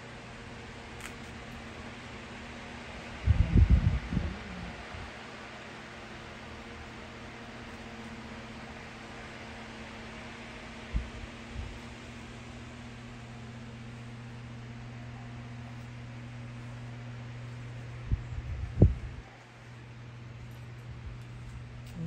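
Electric fans running with a steady hum and hiss of moving air. Low thumps on the microphone come a few seconds in, briefly around the middle, and again near the end, and these are the loudest sounds.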